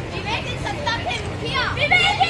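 Women's voices raised in loud, expressive speech, over the murmur of a crowd.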